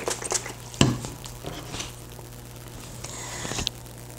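Hairspray sprayed onto a synthetic wig, with hands rustling the hair and clothing close to a clip-on microphone. There are short clicks and a knock in the first second, then a short hiss of spray near the end.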